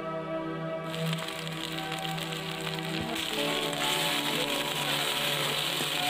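Sliced onions and ginger-garlic-chilli paste sizzling in hot oil in a kadai as a spatula stirs them. The sizzle comes in about a second in and grows louder about four seconds in.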